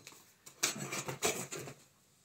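Hands rubbing and scraping over a cardboard shipping box in a run of short rough strokes, starting about half a second in and stopping shortly before the end.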